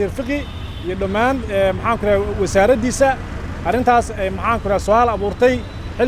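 A man talking continuously in Somali, over a steady low rumble of street traffic.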